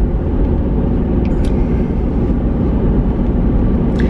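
A car's running noise heard from inside its cabin: a steady low rumble.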